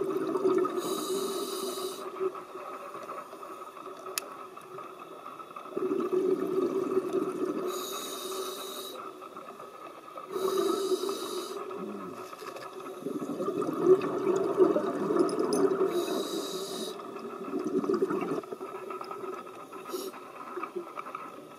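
Scuba diver breathing through a regulator underwater: about four breaths, each with a short hiss on the inhale and a few seconds of bubbling exhaust on the exhale.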